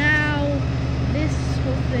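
Parked fire engines idling with a steady low diesel rumble. Near the start, a short pitched vocal sound that falls slightly in pitch.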